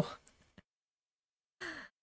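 The tail of a spoken word, then dead silence, then a woman's short breathy sigh near the end, falling in pitch.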